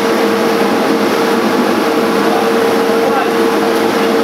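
Plastic recycling plant machinery running steadily: a loud, even mechanical noise with a constant hum that neither starts nor stops.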